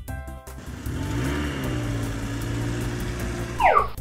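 Dubbed-in truck engine sound effect: a low drone that rises a little in pitch and then runs steadily for about two and a half seconds, ending in a quick falling whistle-like glide near the end. Children's background music is heard at the start.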